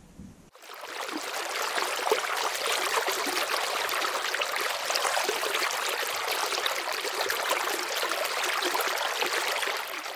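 Running water, like a babbling stream: a dense, steady splashing hiss that starts suddenly about half a second in and drops away at the very end.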